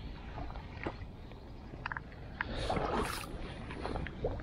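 Boots squelching and sloshing through waterlogged marsh ground and standing water. The loudest wet splashing swell comes about three seconds in.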